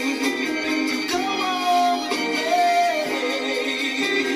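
Soul music playing from a 7-inch vinyl single on a turntable. A melody of long, wavering held notes runs over a steady backing, with thin bass.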